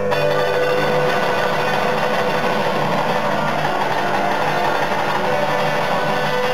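Acoustic guitar playing a Delta blues song, with a dense strummed passage that comes in sharply at the start.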